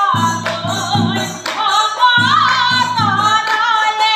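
A woman's voice singing an Assamese Nagara Naam devotional chant, accompanied by large brass bortal cymbals clashed in a steady rhythm of about two strokes a second over a low beat.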